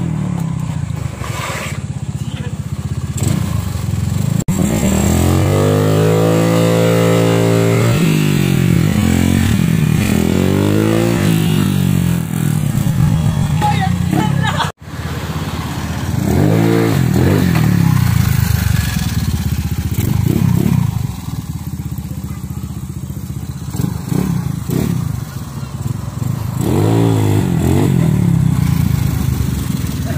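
Small motor scooter engines passing close by and revving, their pitch rising and falling several times. The sound breaks off suddenly about 15 seconds in.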